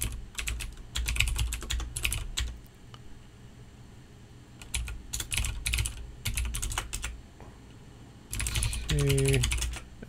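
Computer keyboard typing in quick bursts of keystrokes, with a pause of about two seconds between bursts. A voice sounds briefly near the end.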